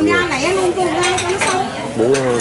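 Bowls and tableware clinking as diners eat, with people's voices talking over it the whole time.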